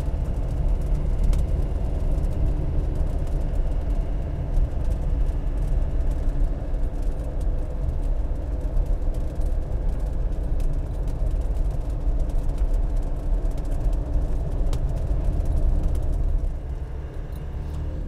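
Diesel engine of a custom soft-top Land Rover Defender 90 running steadily as it drives along, with road noise. The sound eases a little near the end.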